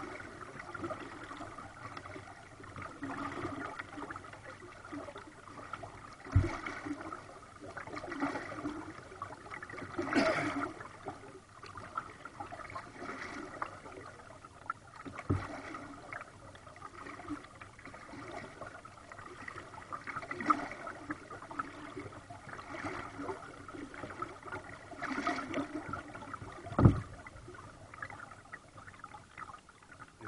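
Kayak paddle strokes: water splashing and dripping off the blade, swelling every two to three seconds. Three short, low thumps come about a quarter, half and nine-tenths of the way through.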